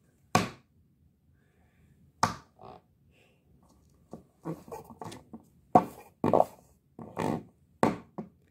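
A series of sharp knocks and thuds: one just after the start, two more about two seconds in, then a quicker, irregular run of knocks in the second half.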